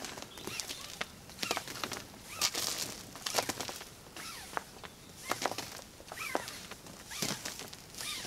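Dynamic climbing rope swishing and rustling against clothing as loops are pulled out and whipped over the head and onto the shoulders to build alpine coils. The strokes come about once a second, unevenly.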